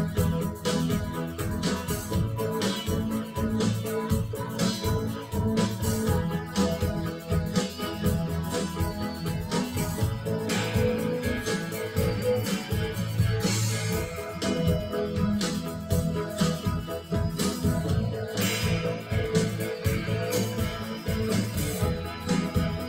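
A guitar-led band track with a steady beat, played back over studio monitor speakers at a mixing session and picked up by a microphone in the room.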